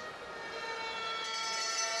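A sustained, siren-like tone with several steady overtones, growing gradually louder, with higher overtones joining about halfway through.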